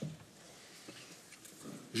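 A quiet pause at a lectern microphone: faint room tone with a small click about a second in, then a man's voice starting again near the end.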